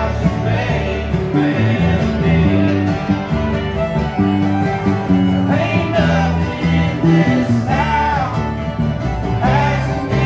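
A live country-bluegrass band playing acoustic guitar, fiddle and mandolin, with bass notes moving underneath and gliding fiddle-like lines on top.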